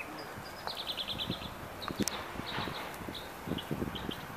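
Small dogs scuffling on loose gravel during play, their paws crunching and scraping in scattered short knocks. A bird gives a quick high trill about a second in.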